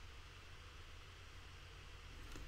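Near silence: faint steady microphone hiss and low hum of room tone.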